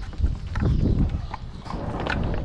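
Two cats eating wet food from plastic dishes: wet chewing and smacking clicks. A loud low thump-and-rumble comes from about a quarter second to a second in.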